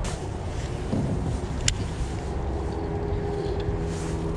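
Wind buffeting the microphone in a low, steady rumble. A single sharp click falls near the middle, and a faint steady hum comes in just past halfway.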